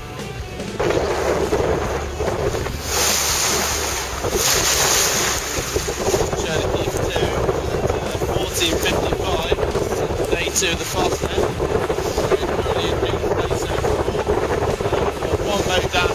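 Strong wind buffeting the microphone on a sailing yacht in rough, wet weather, with sea and waves rushing around the boat. It cuts in suddenly about a second in, and a stronger gust comes about three seconds in.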